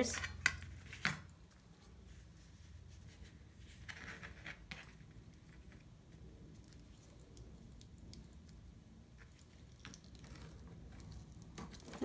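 Quiet handling sounds of a heat-sealing fuse tool being drawn along a ruler over a plastic sleeve: a couple of light clicks about a second in and a soft scrape around four seconds in.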